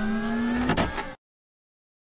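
Short electronic logo sound effect: a held low tone with a rushing noise over it and a few lines gliding slightly upward. It stops abruptly just over a second in.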